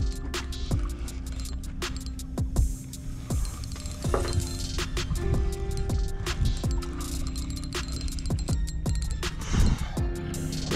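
Background music laid over the footage, with held tones that change every second or two and frequent short clicks.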